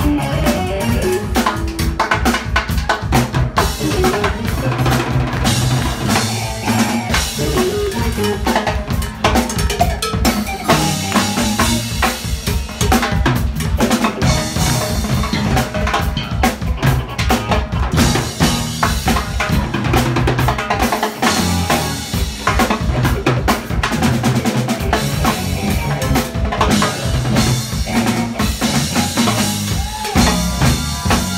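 Live Latin rock band playing a percussion-heavy groove, with drum kit, congas and timbales over a steady bass line.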